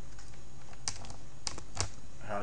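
A few scattered computer keyboard key clicks, the clearest about a second in and near the end, over a steady low electrical hum.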